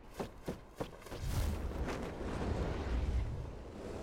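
A few sharp knocks, then from about a second in a loud rush of wind with a deep rumble, as of a hang glider swooping through the air.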